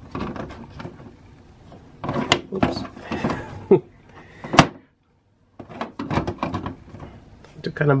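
Plastic clicks and rustles of a Robot Spirits Guair action figure being handled and posed, its joints and sword parts knocking and clicking, with a sharper click just before an abrupt second-long break in the sound.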